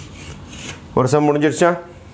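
Chalk scraping on a blackboard as an equation is written and boxed, for about the first second. A man's voice follows briefly.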